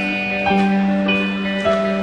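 Live band music, the song's instrumental opening: picked guitar notes changing about every half second over a held low note.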